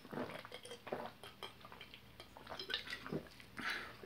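A person drinking from a bottle: a run of soft gulps and small swallowing clicks, quiet and irregular.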